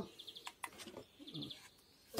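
A bird chirping in the background: two short, high, rapid trills about a second apart. A few faint clicks come from the plastic pump controller and its wire being handled.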